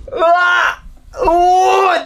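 A man laughing helplessly in two long, high-pitched wailing cries, one after the other.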